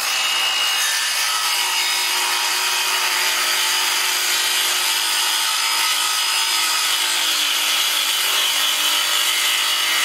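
Circular saw running under load as its blade cuts across the end grain of a glued-up hardwood cutting board, trimming the end square. The motor whine and the blade's rasp through the wood stay steady through the cut.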